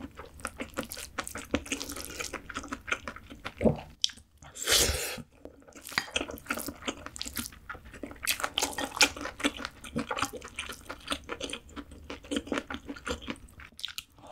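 Close-up eating sounds: a spoon clicking and scraping in a glass bowl of rice soaked in soy crab marinade, and wet chewing of mouthfuls, in quick irregular clicks, with a louder noisy burst about five seconds in.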